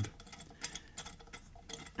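Faint, scattered metallic ticks and light scraping from a bottoming tap being turned by hand, its shank grazing the side of the 7/16-inch hole in the cylinder head.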